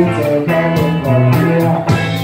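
Live rock band playing: electric bass and electric guitars over a steady drum beat.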